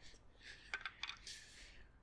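A tennis racket set down on a hard court: a few faint light clicks about three quarters of a second to a second in, followed by a brief scuff.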